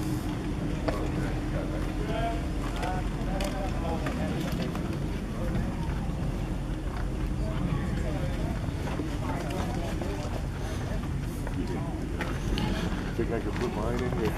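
Scattered, faint voices of people talking in the background over a steady low rumble.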